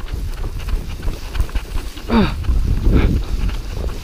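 Wind buffeting the microphone, with the swish and crunch of steps through dry, snow-dusted grass. About two seconds in, a short voice-like call falls in pitch.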